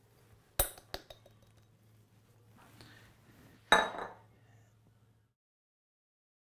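A glass bowl clinks against a stainless-steel stand-mixer bowl as flour is tipped in. There are two light knocks about half a second in, a soft rustle of pouring flour, then a louder clink with a short ring just under four seconds in.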